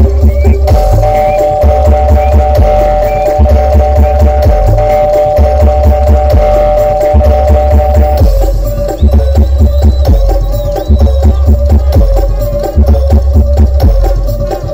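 Loud live bantengan accompaniment music: East Javanese folk percussion with heavy, booming drum beats in an uneven rhythm. A steady droning wind note is held over the drums for most of the first eight seconds, then breaks off.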